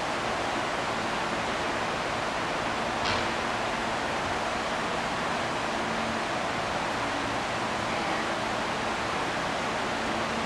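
Steady rushing background noise with a faint low hum underneath, unchanging throughout; a single short tick about three seconds in.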